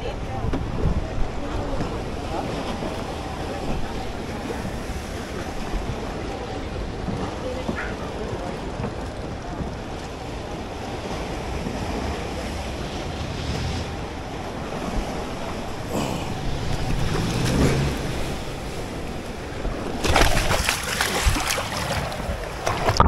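Sea water lapping and sloshing with wind on the microphone, a steady rush of noise, with a louder burst of splashing near the end.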